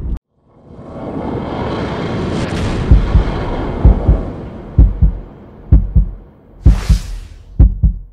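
Channel intro sound effect: a swelling rushing whoosh, then deep thumps in pairs like a heartbeat, about one pair a second, with a short hissing swish near the end.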